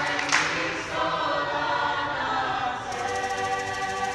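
Mixed choir singing a cappella, with a hand clap just after the start. The clapping then stops and the voices hold long, sustained notes.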